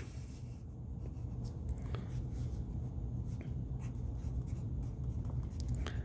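Colored pencil drawing lines and writing on paper, a soft scratching, over a low steady hum.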